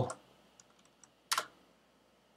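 Computer keyboard keystrokes as a line of code is typed and entered: a few faint taps, then one louder key press just over a second in.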